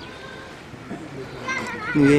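Faint children's voices in the background of an outdoor street, with a short high call a little past the middle.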